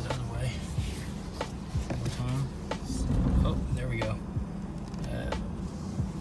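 Low, steady engine rumble of a Ford F-250 pickup idling at a crawl, heard inside the cab, with scattered short clicks and knocks. Faint music-like tones sound over it.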